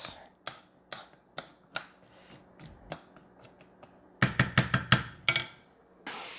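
Wooden spoon knocking and scraping against a stainless steel skillet while stirring diced onions: a series of light, separate clicks, then a louder cluster of knocks about four seconds in.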